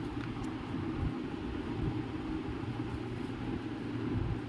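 Steady low rumble of background noise, with no clear events in it.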